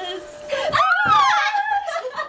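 A woman's high-pitched vocal cry that slides up and then falls away over about a second, with a steady held note under it.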